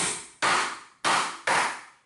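Hammer driving galvanized box nails into a wooden 2x4 of a table frame: four blows, each ringing out briefly.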